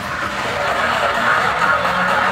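Dance music from a DJ set heard from a distance across the beach, blurred into a steady wash of noise with the crowd.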